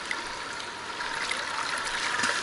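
Swimming-pool water lapping and trickling right at the camera, a steady watery hiss, with light splashing near the end as a swimmer surfaces.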